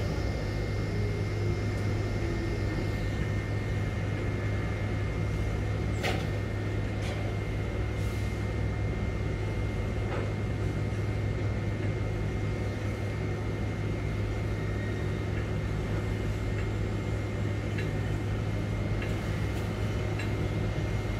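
Steady low machinery hum inside a crane operator's cab as the crane hoists its container spreader, with a few faint clicks.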